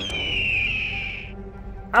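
A high whistled tone that glides slowly down in pitch for just over a second, then stops.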